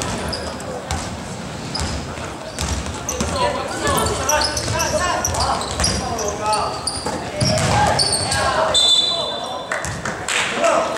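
Basketball dribbled on a hardwood gym floor during play, among players' shouts and the echo of a large hall. Near the end comes a steady high whistle blast lasting about a second, a referee stopping play.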